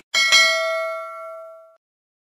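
Notification-bell sound effect of a subscribe animation: a bell chime struck twice in quick succession, its ringing tones fading away over about a second and a half.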